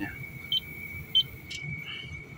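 Komatsu excavator monitor panel giving two short high beeps as its buttons are pressed, with a brief click after them. A steady thin high-pitched tone runs underneath.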